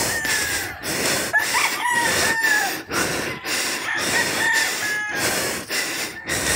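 A rooster crowing in the background, its long call about a second and a half in and a shorter one near the end, over close, heavy panting breaths that come in rushes about twice a second from a man tired out by climbing a hillside.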